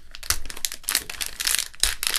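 A Lego minifigure blind bag, a foil-type plastic packet, crinkling in the hands as it is torn open, giving a rapid run of irregular crackles.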